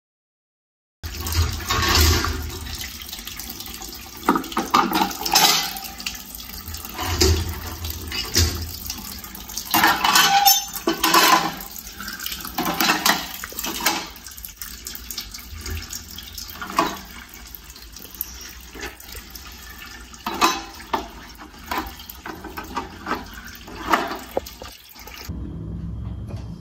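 Tap water running and splashing onto plastic fan parts in a sink as they are rinsed and turned by hand under the stream, with uneven surges of splashing. It starts suddenly about a second in.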